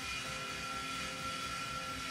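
Steady background machine hum with a constant high whine, unchanging throughout.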